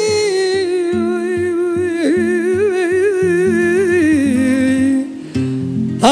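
Elderly man singing a milonga, drawing out one long sung note with a wide vibrato that slowly sinks in pitch, over an acoustic guitar picking low bass notes. About five seconds in the voice stops and the guitar carries on alone.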